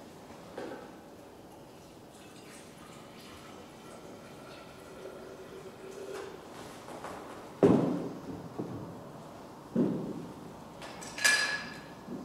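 Objects being handled on a hard floor: two dull knocks about two seconds apart in the second half, then a ringing clink near the end.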